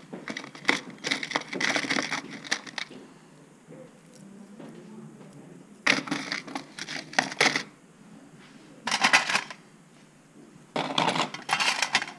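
Small metal pins and jewelry pieces clinking and rattling against each other as a hand rummages through them in a bowl and then a metal tray. The clinking comes in several bursts of a few seconds with quieter gaps.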